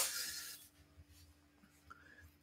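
Stainless-steel kitchen tongs being handled: a brief metallic scraping rub that fades out within the first half second, followed by a faint steady hum.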